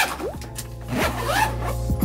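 A suitcase zipper being pulled open, over background music with a steady bass.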